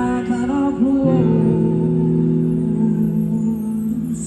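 Live rock band playing through a PA, with a woman singing a wavering line in the first second, then a long held note from the band and voice that starts to fade near the end.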